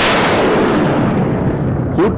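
A dramatic boom sound effect: one sudden loud hit that dies away slowly over about two seconds. It is the kind of stinger a TV drama puts on a character's shocked reaction shot.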